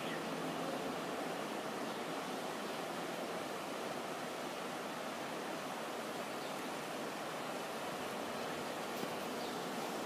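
Steady outdoor background noise: an even hiss with no distinct events.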